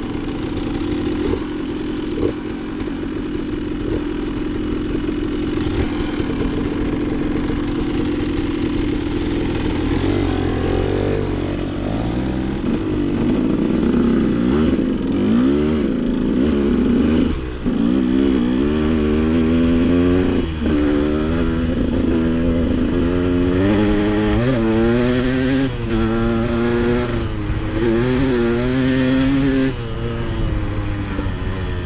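Dirt bike engine idling, then pulling away about ten seconds in and accelerating up through the gears, its pitch climbing and dropping back with each shift.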